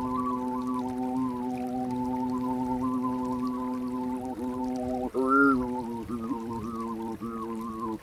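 A man's voice toning a long, steady held note whose vowel shifts so the overtones above it move. From about four seconds in it breaks into shorter held notes with brief dips in pitch, with a louder swell a little after five seconds.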